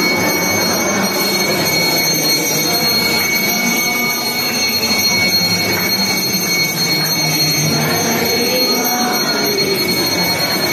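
Continuous ringing of temple bells during an arati (lamp offering), a steady dense clangor with sustained high ringing tones and a murmur of voices underneath.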